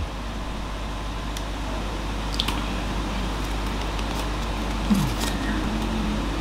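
A person chewing a mouthful of Ramly burger, with faint wet mouth clicks, over a steady low room hum. A short falling 'mm' comes about five seconds in.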